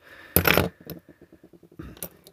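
Handling noise on a workbench: a brief clatter as a small circuit board and a plastic clock-spring housing are put down and picked up, followed by a quick run of faint ticks.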